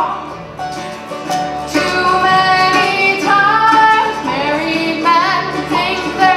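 Bluegrass band playing live, with mandolin, acoustic guitar and upright bass under a woman's sung lead vocal with vibrato.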